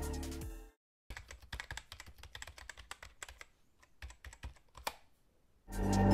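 Music fades out within the first second. After a brief silence come about four seconds of quick, irregular clicks like typing on a computer keyboard. Music starts again near the end.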